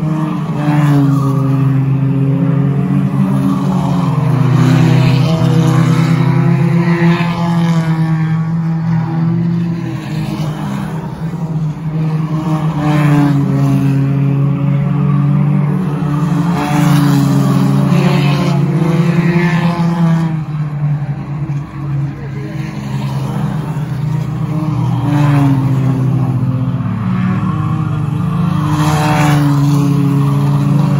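Engines of several small stock race cars running at speed around a short paved oval. The engine note swells and fades repeatedly as cars pass close by.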